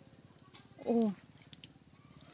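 A single short spoken "oh", falling in pitch, about a second in. Otherwise near quiet with a few faint clicks.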